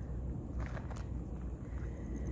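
Outdoor background of a steady low rumble, with a few faint soft scuffs about half a second to a second in.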